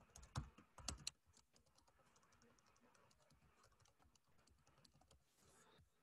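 Typing on a computer keyboard: a quick run of louder key clicks in the first second, then fainter, scattered keystrokes.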